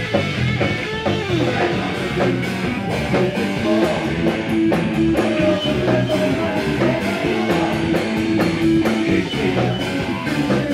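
A punk rock band playing live and loud: electric guitar, bass guitar and drum kit with frequent cymbal hits.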